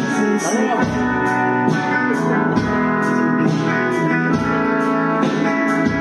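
Live band playing a slow praise song: electric guitar to the fore over bass, keyboard and a drum kit keeping time on the cymbals about twice a second.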